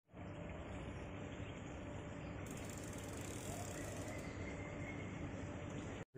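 Faint, steady outdoor street ambience: a low, even hum of distant traffic, with a faint thin high tone about four seconds in.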